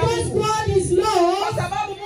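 A woman singing into a microphone, her amplified voice holding and bending long notes.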